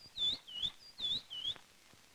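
A small bird chirping four times in two quick pairs, each note a short high swoop that dips and rises in pitch.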